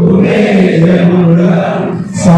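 A crowd of men chanting a prayer together in unison, holding one long phrase on a steady pitch.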